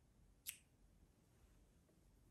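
A single sharp snip of small scissors cutting the end of a yarn sample, about half a second in; otherwise near silence.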